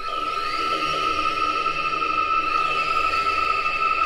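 Drum and bass breakdown with no drums: a steady, held high synth tone with faint sliding glides above it. Right at the end the tone starts pulsing in quick stabs.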